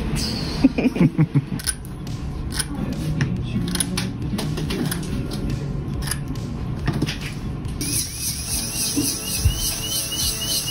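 Metal braces brackets being pried off the teeth with orthodontic pliers: many sharp, irregular clicks and snaps, over background music. A brief burst of voice comes about a second in.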